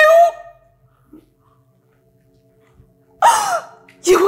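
A woman's tearful, wailing voice trails off at the start, then after a pause she draws a sharp, loud sobbing gasp about three seconds in.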